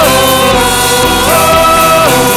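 Live worship band: several voices singing long held notes together over acoustic guitar accompaniment, the melody stepping down at the start and back up just over a second in.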